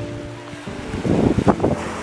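Background music holding a few steady notes, which stop about a third of the way in. It gives way to small waves washing onto the shore, with wind on the microphone, rough and uneven near the end.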